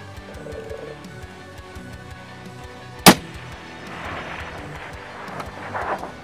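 A single suppressed precision-rifle shot about halfway through, a sharp crack far louder than anything else, over background music.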